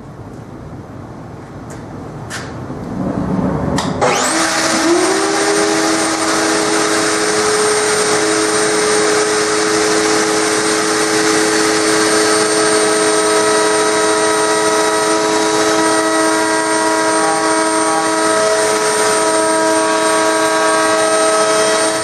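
A few knocks from handling the frame, then a table-mounted router switched on about four seconds in. It spins up with a quick rising whine to a steady high-pitched run while a 45-degree chamfer is cut along the top edge of a walnut base.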